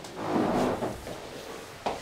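Handling noises at a desk: a short muffled rustle in the first second, then a single sharp knock near the end.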